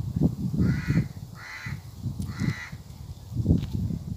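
A crow cawing three times, the calls evenly spaced less than a second apart, over irregular low thumping and rumble.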